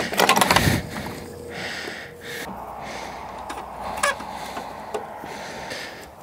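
Clicking and rattling of a garden hose and its metal fittings being handled and coupled to a valve on a steel stock tank, then a steady hiss with a single click a few seconds later.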